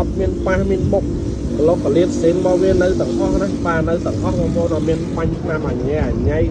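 A man talking steadily over a constant low hum.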